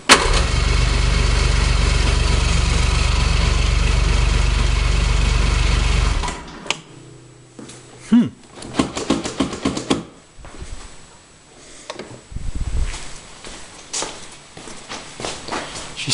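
Electric starter cranking an old 800 cc three-cylinder two-stroke snowmobile engine steadily for about six seconds, then stopping suddenly. The engine turns over well but does not fire. Quieter clicks and a low thump follow.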